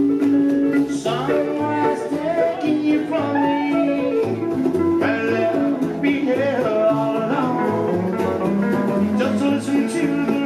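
Live band music: acoustic guitars strummed over a steady bass line, with a man singing into the microphone.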